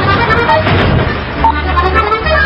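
Background music with held bass notes that change in steps, part of a lively accordion-led soundtrack.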